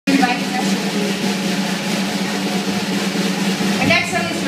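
A live rock band with electric guitar, bass and drums holds a sustained chord under a drum roll, the sound of a song being brought to its close.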